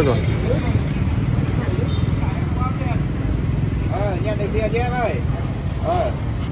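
Voices talking in snatches over a steady low rumble of outdoor street noise.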